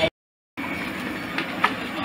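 Steady background noise of a busy shop, with two faint clicks about a second and a half in. The sound drops out to dead silence for about half a second just after the start.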